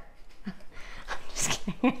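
A quiet pause in a woman's talk, with a breath about a second and a half in, then she starts to speak again near the end.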